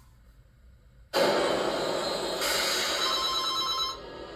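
Telephone bell ringing, cutting in suddenly about a second in and running on loudly until just before the end, heard through a TV's speakers.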